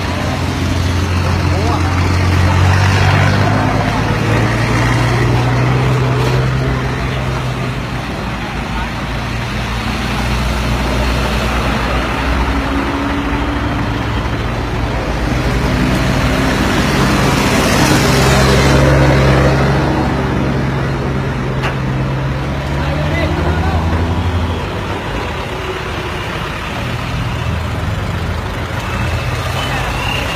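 Heavy truck engines running close by in stopped traffic, the low engine note shifting up and down in pitch as vehicles rev and move, with indistinct voices in the background.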